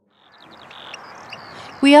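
Outdoor ambience fading in after a moment of silence: a soft hiss with faint, high, repeated chirps from small animals.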